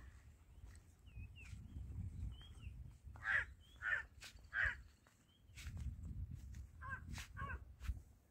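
Crows cawing: three caws about two-thirds of a second apart near the middle and two more near the end, with a few small high bird chirps and low wind rumble on the microphone.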